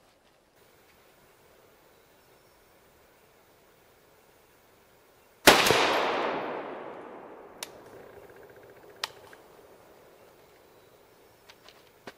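A single 7.62x39 rifle shot, firing a 124-grain full metal jacket round, about halfway through. It cracks sharply, then echoes and fades away over several seconds.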